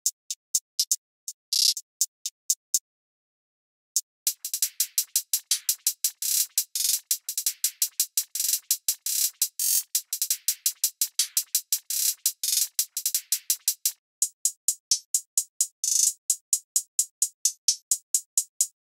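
Programmed trap hi-hat loops auditioned one after another, hi-hats alone with no kick or bass: first a sparse pattern with one open hat, then after a short pause a dense pattern full of rapid hi-hat rolls, and near the end a steadier pattern.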